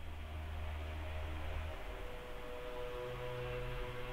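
Quiet background music of sustained, held notes fading in, with the low note changing about three seconds in.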